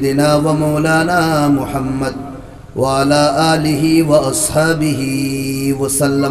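A man's voice chanting in long, held melodic phrases, the sung intonation of a religious recitation through a public-address microphone. There are two phrases with a short pause between them about two seconds in.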